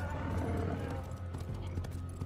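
Clopping, hoof-like footfalls in a loose irregular rhythm from the episode's sound track, over a steady low hum and faint music.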